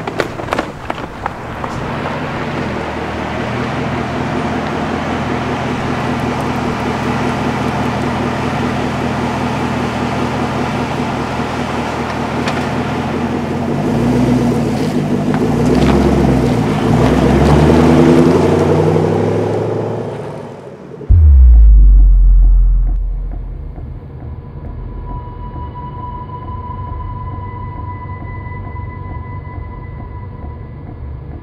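Car engine running with road noise, swelling and gliding up and down in pitch for several seconds; about two-thirds of the way through, a sudden deep boom, followed by a quieter steady eerie drone with thin high tones.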